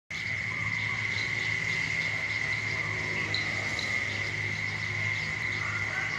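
A steady high-pitched insect drone, one unbroken tone, with a few short bird chirps over it.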